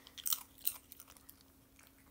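A small dog crunching a hard dog treat: a few sharp crunches in the first second, then fainter chewing.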